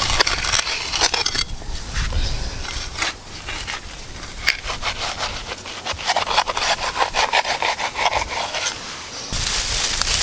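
A wooden board and hands scraping, rubbing and patting a slab of wet clay smooth, in a run of short, uneven strokes. Near the end, dry twigs and leaves rustle as hands pile them for a fire, with wind on the microphone.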